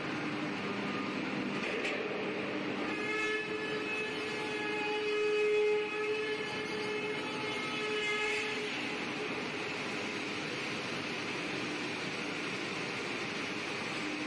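Pipe-plant machinery running as a steady mechanical noise. A held whining tone rises out of it from about three seconds in, swells, and fades out after about eight seconds.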